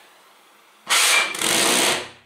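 Glass passata-jar pulse jet lit by a lighter and firing: about a second in a loud, rushing burn starts, holds for just over a second with one brief dip, and dies away near the end.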